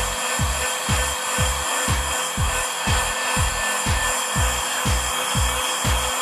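Steady hiss and whir of a heat gun blowing over wet spray paint on a polycarbonate part, drying it. Background music with a low beat about twice a second plays under it.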